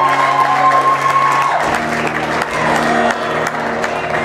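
Live acoustic guitar strummed in steady chords under a long held sung note. The note ends about a second and a half in, where the chords change.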